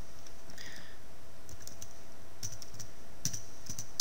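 Typing on a computer keyboard: a few separate keystrokes, mostly in the second half, over a steady background hiss.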